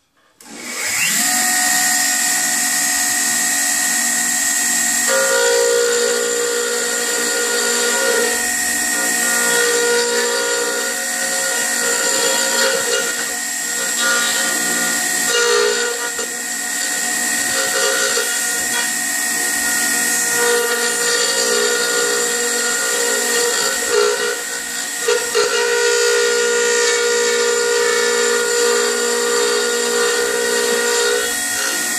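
Wood router motor starting up about half a second in and running at full speed with a steady high whine. From about five seconds in its bit is cutting into a square lumber blank, adding a lower tone that comes and goes as the cut bites and eases.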